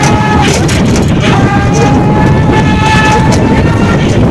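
A vehicle horn sounded twice in long, steady high notes, the second held about two seconds, over the steady rumble and wind of a ride along a road.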